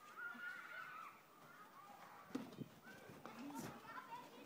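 Faint voices with no clear words, rising and falling in pitch, and a few soft knocks in the middle.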